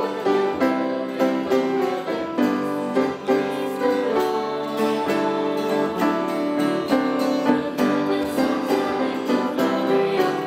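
A small choir of women's voices singing together with instrumental accompaniment, the notes struck or plucked in a steady pulse of about two a second.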